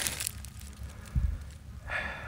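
A concrete block being lifted off damp soil, with low rumbling handling noise and one dull, short thump a little after halfway.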